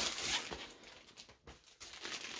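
Packaging wrap rustling as it is handled and pushed aside, loudest in the first half second, then fading.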